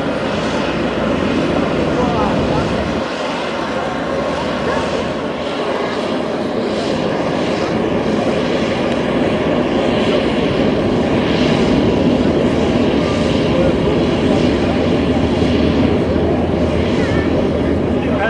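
Military aircraft engines running, a steady dense noise that slowly grows louder.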